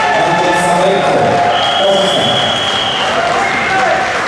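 Voices of a crowd in an arena hall, with a referee's whistle giving one long steady blast about one and a half seconds in, stopping the wrestling bout.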